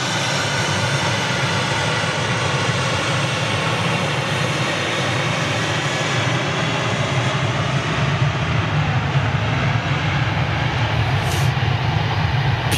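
Airliner jet engines running in a steady roar with a whine over it: a Boeing 737 at takeoff power mixed with the CFM LEAP-1A engines of a taxiing Airbus A320neo, which sound like a little mini triple seven.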